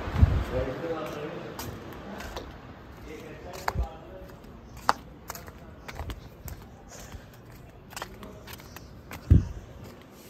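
Handling noise from a phone camera carried by someone walking: scattered low thumps and light clicks, the loudest near the start and near the end. Indistinct voices fade out in the first second.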